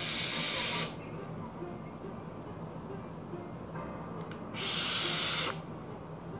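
Breathy hissing of vaping a mesh-coil mod fired at 80 W. One hiss of air ends just under a second in, and a second hiss runs from about four and a half to five and a half seconds in as a cloud of vapour is blown out.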